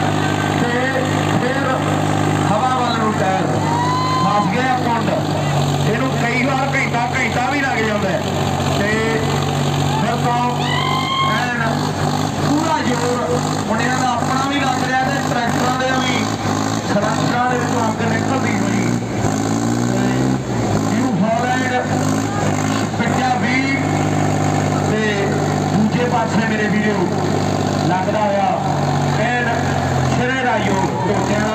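Two farm tractor diesel engines, a Sonalika DI 745 and a New Holland 5620, running hard under heavy load as they pull against each other, a steady low drone whose pitch shifts around twenty seconds in. An announcer's voice over a loudspeaker runs over the engines.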